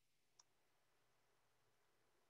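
Near silence, with a single faint click about half a second in.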